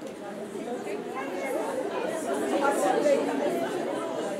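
A lecture audience answering a question aloud at once: many voices overlapping in a murmur of chatter that swells a little toward the end.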